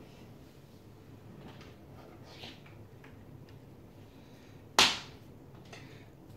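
Faint handling and rustling noise while the mini PC's power cable is fetched, then one loud, sharp snap or knock about five seconds in that dies away quickly.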